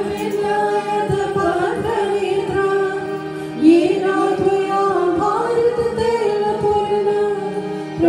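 A woman singing a devotional song into a microphone in long, held notes over a steady low drone, a fresh phrase starting about three and a half seconds in.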